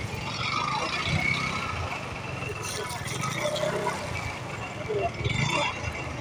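Busy street sounds: people's voices talking over a steady low vehicle engine rumble.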